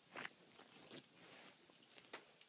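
Faint rustling and scuffing of a long-haired dog shifting on bedding, with two short scuffs in the first second.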